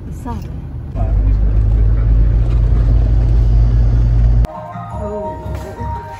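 Low, steady rumble of a moving car heard from inside the cabin, loud from about a second in, with a brief laugh over it. It cuts off abruptly a little before the end, and music takes over.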